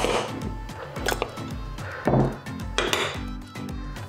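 A spoon scooping salt and tipping it into a small glass on a kitchen scale, with scrapes and light clinks, over background music with a steady beat.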